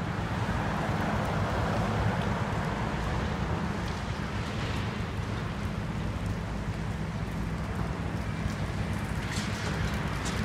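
Diesel excavator engine running with a steady low drone under a constant rushing noise, a few faint ticks coming near the end.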